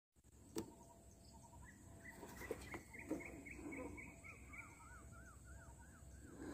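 Faint birdsong: a short chirp repeated about three times a second, then a run of quick arched whistled notes near the end, with a few sharp clicks over it.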